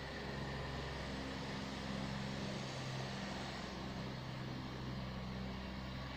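A steady, low mechanical hum holds evenly throughout, like a motor running at a constant speed.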